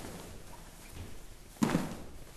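Heavy cotton gi jacket being turned over and spread out on a mat: quiet fabric rustling and handling, then a short, louder thump near the end.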